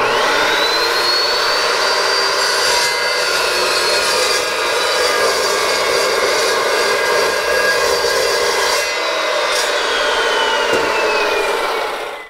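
Evolution S355MCS 14-inch metal-cutting chop saw with a carbide-tipped blade starting with a rising whine, then cutting through a one-inch-thick solid mild steel bar with a steady loud run. About nine seconds in the motor is released and spins down, its whine falling steadily in pitch.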